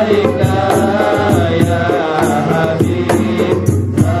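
Islamic devotional chanting of sholawat: a wavering, ornamented sung melody over a steady beat of hand-drum strokes.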